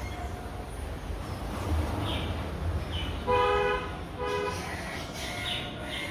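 A vehicle horn honking twice in quick succession, two short steady toots at one pitch, about three seconds in. Short bird chirps are heard around them.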